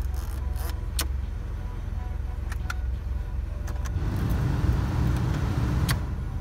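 A 1995 Buick LeSabre's 3.8-litre V6 idling, heard inside the cabin, with several sharp clicks from the dashboard controls being pressed. About four seconds in, the heater/AC blower fan comes on and its rush of air grows louder.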